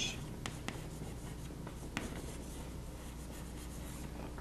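Chalk writing on a chalkboard: faint scratching with a few sharp taps as the chalk strikes the board.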